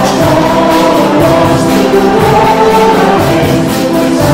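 Church congregation singing a hymn together with a worship band, with long held notes over a steady beat.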